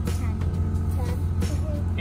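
Boat engine running steadily with a low, even hum, and faint voices over it.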